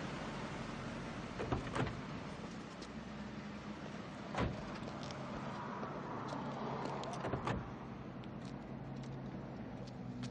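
A car's steady low hum with a few sharp clicks and knocks, about one and a half, two, four and a half and seven and a half seconds in.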